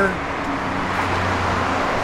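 Background road traffic outdoors: a steady low rumble that grows a little stronger about halfway through.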